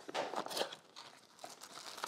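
Small cardboard product box being opened by hand: a short run of scraping and crinkling of the packaging in the first half-second, then a few softer rustles.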